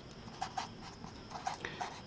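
A felt-tip marker writing on paper: a series of faint, short scratchy strokes.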